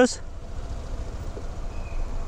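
Steady low rumble of a Suzuki scooter riding slowly through traffic, its engine and wind noise blended on the mic. A faint, brief high tone comes near the end.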